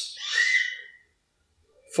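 A short breath into a close microphone, a soft hiss carrying a faint whistling tone, fading out within the first second and followed by silence.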